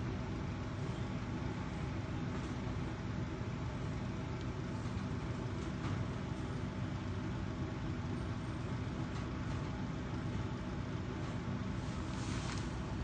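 Steady low rumble with a constant hum that does not change, of the kind made by an idling engine or other running machinery.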